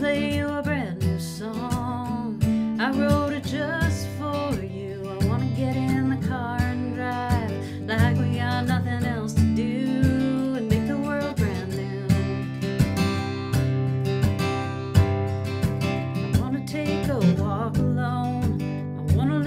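Acoustic guitar strummed steadily, accompanying a solo voice singing a folk-style song.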